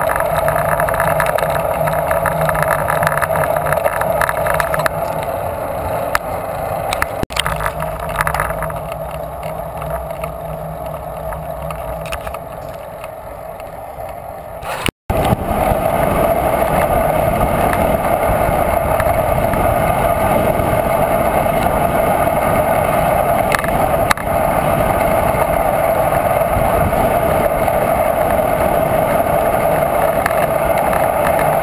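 Steady wind rush over the camera microphone with tyre and road noise from a bicycle rolling along a highway. About halfway through the sound cuts out for an instant and comes back louder.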